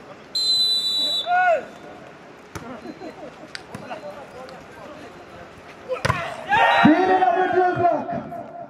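A referee's whistle blows once for about a second, then a volleyball is struck a couple of times in play. From about six seconds in, players and spectators shout loudly.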